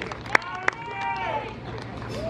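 Mostly speech: a voice saying "thank you", then another voice gliding up and down, with two sharp clicks in the first second.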